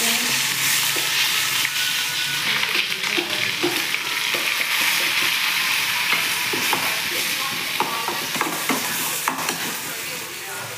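Chopped onions sizzling as they hit hot oil in a metal kadai, with a steady hiss throughout. A perforated steel spoon stirs them, clicking and scraping against the pan, with the clicks coming most often in the second half.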